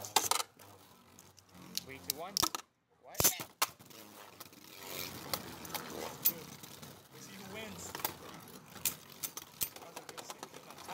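Beyblade Burst tops and launchers being handled, giving sharp plastic clicks and clinks, several loud ones in the first few seconds and then a run of smaller ticks, with a low mumbled voice now and then.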